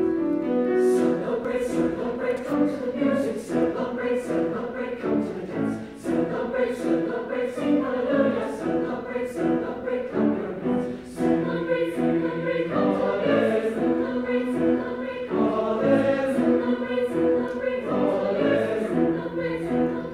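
Mixed choir of male and female voices singing in harmony, accompanied by a grand piano; the voices come in within the first second over the piano, with crisp sung consonants cutting through regularly.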